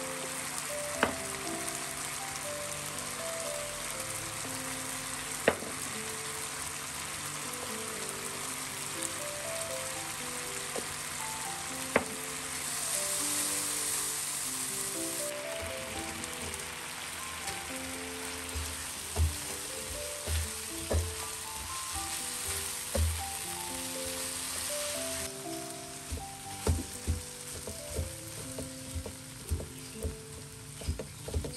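Chili paste sizzling steadily in a ceramic-coated wok, with a few sharp taps in the first half. About halfway through, fried tempeh cubes are tipped into the sauce and stirred with a silicone spatula, adding a string of soft knocks over the sizzle. Background music plays throughout.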